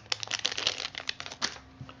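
Crinkling of a metallised anti-static foil pouch as a small USB adapter is pulled out of it: a dense run of crackles that stops about a second and a half in.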